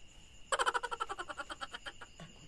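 A rapid run of short chirps, about a dozen a second, starting abruptly about half a second in and fading away over a second and a half, over a steady high whine.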